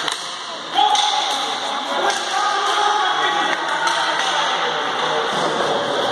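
Ball hockey play in an echoing sports hall: sharp clacks of sticks and ball against the hard floor, under long drawn-out shouts and calls from players and spectators.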